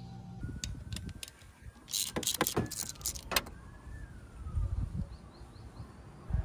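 Metal clinks and knocks of hand tools and a scooter's front brake caliper being handled. A few light clicks are followed by a quick run of sharp metallic clinks near the middle, then duller bumps.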